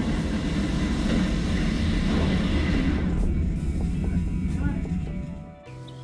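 Music wire running through the hull of a model spaceship as it slides down the wire rig, heard from a camera inside the hull: a steady rushing hum with a low rumble that fades out about five seconds in.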